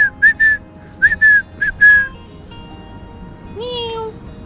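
A person whistling a quick run of about seven short notes in the first two seconds, some of them falling slightly at the end. A short voiced sound follows near the end.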